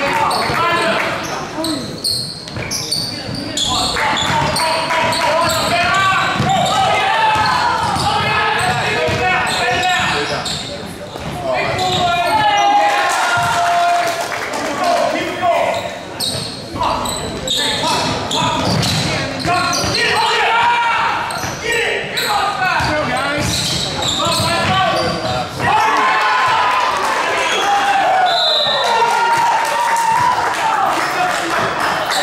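A basketball dribbled and bouncing on a hardwood gym floor, with people's voices calling out across the gym.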